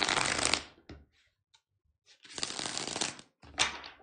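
A tarot deck being shuffled by hand: two rustling bursts about two seconds apart, then a shorter, sharper burst near the end.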